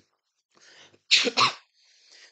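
A person sneezing: a short breath in, then one loud sneeze about a second in.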